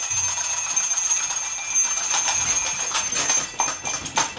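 Twin-bell alarm clock ringing, a high-pitched, continuous clatter of the striker on the bells.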